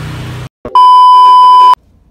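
A loud, steady electronic beep lasting about a second, a single high pure tone edited into the soundtrack at a scene cut. Before it, outdoor background hum stops abruptly about half a second in.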